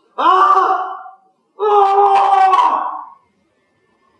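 A man wailing in distress: two long, loud cries, the second longer than the first, each held at one pitch.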